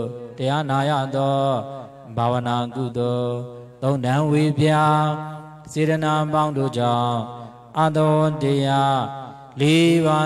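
A Buddhist monk chanting a devotional verse into a microphone. One male voice goes in sustained, melodic phrases of about two seconds each, with short breaks for breath between them.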